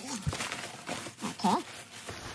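Plastic packaging and bubble wrap crinkling and rustling as a wrapped item is handled and lifted out of a shipping box, with two short bits of voice near the start and about one and a half seconds in.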